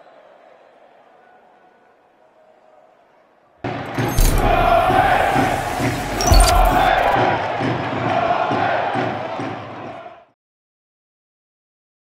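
Faint stadium crowd noise. About three and a half seconds in, a sudden loud burst of football crowd cheering and chanting runs for about six seconds and cuts off abruptly.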